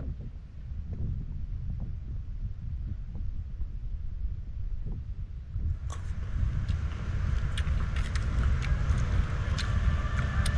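Wind buffeting the microphone, a steady low rumble. About six seconds in, a louder hiss joins it, scattered with short sharp clicks.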